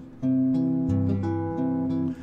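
1967 Gibson ES-125C hollow-body archtop electric guitar playing a short run of ringing chords: the first comes in about a quarter second in, and the chord changes three times before it stops at the end.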